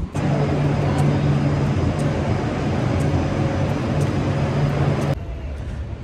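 Steady drone of a moving motor vehicle: a low engine hum over road noise, with a faint tick about once a second. It drops off to a quieter hiss about five seconds in.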